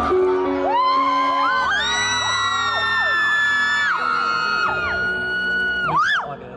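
Backing music of a song's intro playing through a hall's sound system while many fans scream over it in long, overlapping high-pitched cries.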